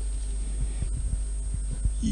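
Pause between speech filled by a steady low electrical hum with a thin, faint high whine above it, broken by a few soft, faint low taps.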